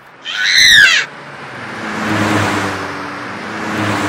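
A short, loud, high-pitched screech that rises and falls in pitch in the first second, then a steady race-car engine sound with a low hum, running through the rest.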